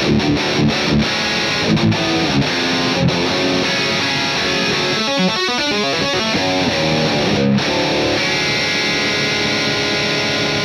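Distorted electric guitar through a Matthews Effects Architect Klon-style overdrive, with some gain added, into a Marshall JCM800 amp: short chugging riff hits, then a fast tapped run of notes about five seconds in, and held chords ringing out near the end.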